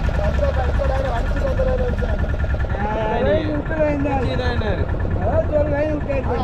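A fishing boat's engine idling in a steady low rumble, with men's voices talking loudly over it.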